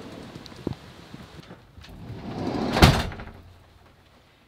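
A van door being pulled shut: a rising rush of movement that ends in one solid thud just under three seconds in. Once it closes, the rain noise from outside is shut out and it goes much quieter.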